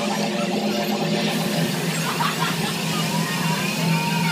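Steady rushing spray with a low hum from a flying-saucer water-play fountain misting water, with children's voices coming in about halfway through.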